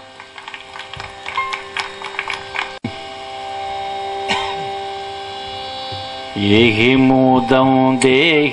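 A steady hum with a few light clicks, then about six seconds in a man's voice starts singing a Carnatic devotional melody, its pitch wavering and ornamented.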